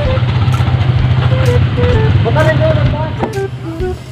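A motor vehicle's engine running with a steady low rumble that drops away just before the end, under background music.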